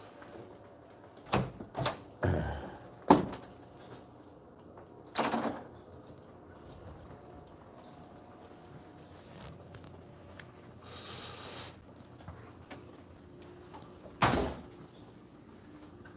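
Doors being opened and pushed through: a quick run of clacks and knocks from a latch and door in the first few seconds, the sharpest about three seconds in, a heavier thud around five seconds, and one more knock near the end.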